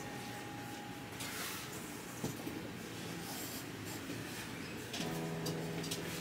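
Quiet handling of an acoustic guitar on the workbench: faint rubbing and a small click, with a soft sustained note ringing near the end.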